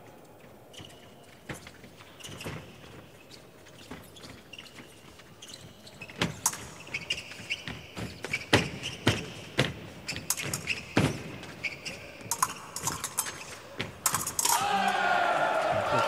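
Épée fencers' footwork on the metal piste: quiet at first, then from about six seconds in a fast run of sharp stamps and thuds from advances and lunges, with short shoe squeaks and light clicks. A voice comes in near the end.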